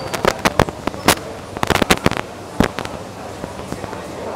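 Clear plastic gift wrapping crinkling close to the microphone as it is handled: a run of sharp, irregular crackles, thickest in the first three seconds.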